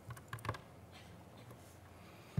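A few faint clicks and soft knocks in the first half second, handling noise picked up by the lectern microphone, then low room hum.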